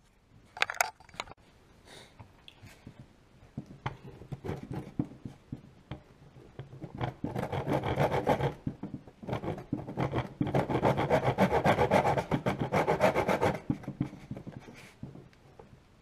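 Stanley handsaw cutting through a wooden dowel. A few short starting strokes come about four seconds in, then steady back-and-forth sawing from about seven seconds, with a brief pause near nine seconds, stopping about fourteen seconds in.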